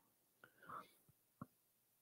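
Near silence: room tone, with a faint breath about half a second in and a single soft click near the middle.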